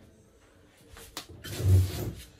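Quiet room, then a click about a second in and a loud low thump with rustling near the end, as a person moves in right beside the office chair close to the microphone.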